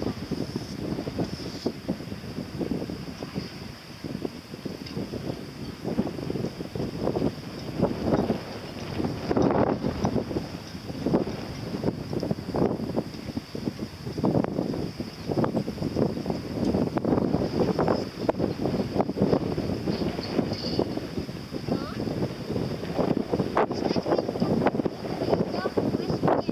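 Wind buffeting the microphone in uneven gusts, with indistinct voices talking underneath.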